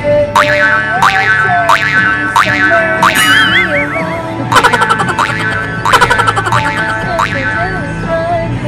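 Background music: a playful tune over a steady low beat, its melody opening with quick rising swoops about every 0.7 s, then wavering tones and bursts of rapid repeated notes.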